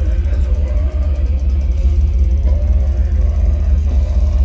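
Technical death metal band playing live at full volume, with guitar and drums over a very heavy, dense low end.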